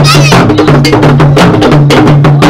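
Ensemble of traditional Ga drums, tall barrel drums and smaller drums beaten with sticks, playing a fast, dense rhythm. The low drum notes step back and forth between pitches.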